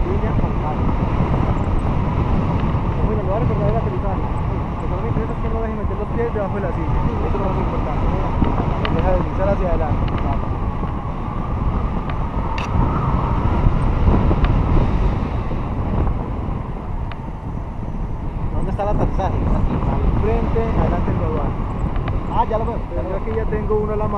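Wind rushing over the camera microphone in tandem paraglider flight: a loud, steady rumble that swells and eases, with muffled voices faintly underneath.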